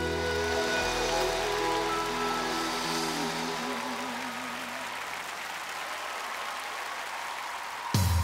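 A gospel ensemble's final held chord of voices and band, one voice wavering in vibrato, fading out by about five seconds while audience applause and cheering carry on.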